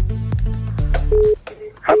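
Background music with deep bass and a steady beat, cutting off sharply about a second and a half in, followed by a couple of short beeping tones. A man's voice starts just at the end.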